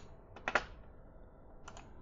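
A few sharp clicks of computer keys: a quick pair about half a second in and a fainter pair near the end, against quiet room tone.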